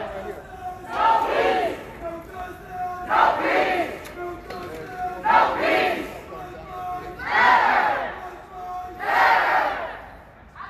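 A crowd of protesters shouting a chant in unison: five loud shouts, about one every two seconds.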